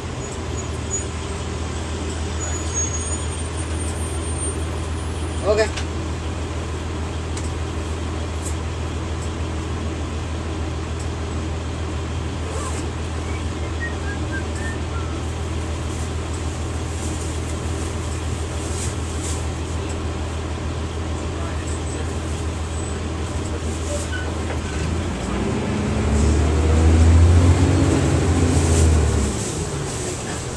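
Diesel engine of a 1999 NovaBus RTS transit bus, heard from inside the cabin, idling with a steady low hum. About 25 seconds in it revs up, rising in pitch and growing louder as the bus pulls away, then drops back near the end. A brief sharp knock or click sounds about five seconds in.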